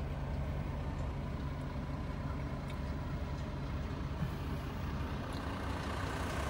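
Pickup truck engine idling: a steady low hum with no change in speed.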